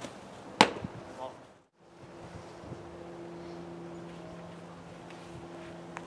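A baseball smacking into a catcher's mitt once, a single sharp pop about half a second in. After a brief drop-out, a steady low hum runs on.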